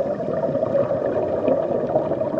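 Underwater water noise picked up by a diving camera: a steady bubbling, gurgling rush with fine crackle.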